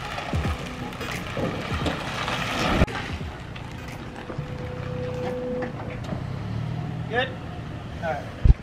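Toyota Tacoma pickup's engine running as it tows an enclosed cargo trailer at low speed, a steady low hum. A single sharp knock comes just before three seconds in.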